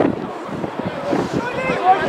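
Several voices calling out on a football pitch, with wind rumbling on the microphone.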